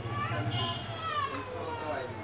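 People's voices, among them a high-pitched one that glides up and down, over a steady low hum.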